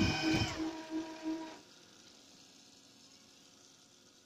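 UV flatbed printer's machinery running with a steady whine and a regular pulse, about three a second. The whine falls in pitch and the machine stops about a second and a half in, leaving a faint low hum. The print on the card drive is already complete.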